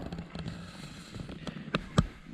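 Low room noise with a few faint ticks, then two sharp clicks near the end, about a quarter of a second apart.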